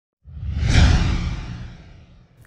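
Whoosh sound effect for an animated logo reveal, with a deep low rumble under a hissing sweep. It swells up a quarter second in, peaks just before a second, and fades away.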